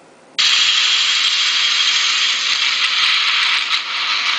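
Loud, steady hiss of heavy rain from a news clip's street footage, played through a phone's small speaker. It starts abruptly about half a second in.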